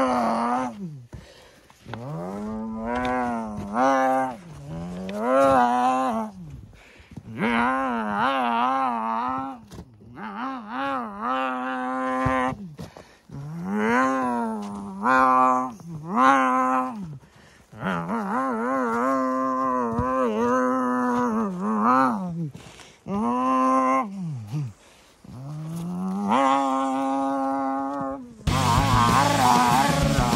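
A person making engine noises with their voice: a string of revving vroom sounds, each a second or two long, rising in pitch, holding, then falling away, with short pauses between. Rock music cuts in near the end.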